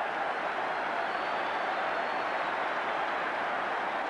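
Football stadium crowd cheering steadily after a home goal, a dense continuous wash of many voices.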